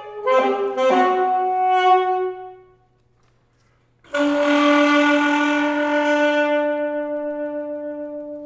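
Unaccompanied alto saxophone playing a short phrase of a few notes, then a pause of about a second and a half, then one long held note that slowly fades.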